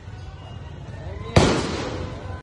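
A single loud gunshot about a second and a half in, echoing briefly, over steady street noise and voices.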